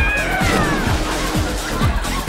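Upbeat commercial jingle music with a steady kick-drum beat, about two beats a second, and a high sung note sliding downward in the first second.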